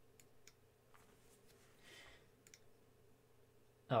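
A few faint, single computer mouse clicks, spaced irregularly, over a low steady hum.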